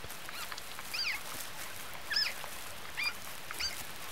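Red panda cub giving short, high squeaks of protest, about half a dozen spaced through the seconds, as it is carried by the scruff in its mother's mouth. A steady soft hiss of forest ambience lies underneath.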